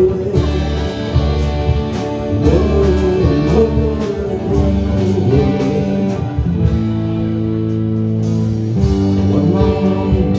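Live rock band playing an instrumental passage: electric lead guitar melody over strummed acoustic guitar, bass and keyboard, with a steady high tick keeping time. About two thirds of the way in the band settles on a long held chord before moving on.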